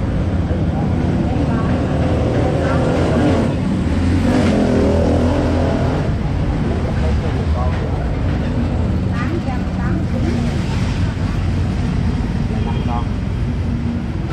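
Motorbike street traffic with a steady low engine hum, under scattered nearby voices.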